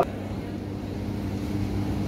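A steady low hum with a few held, even tones under it, in a pause between a man's phrases of speech.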